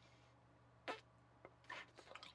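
Near silence broken by one short, soft pop about a second in, from a small bubble of bubble gum being blown in the mouth.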